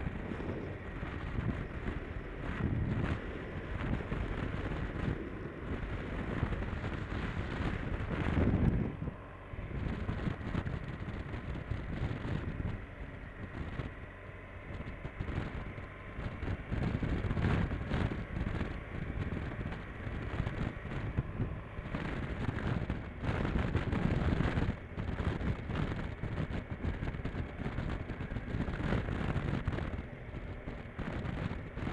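Motorcycle on the move, heard mostly as uneven wind buffeting on the camera microphone that swells and eases every second or two, with the bike's running and a faint steady whine underneath.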